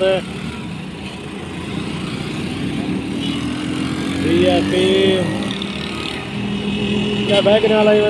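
Road traffic running past: motorcycle and other vehicle engines, with a slowly rising engine pitch from about two to four seconds in as a vehicle goes by.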